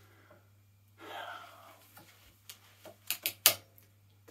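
A breath out about a second in, then a handful of sharp clicks and taps near the end, the last one loudest, as a wooden folding ruler is opened and laid across a steel plate.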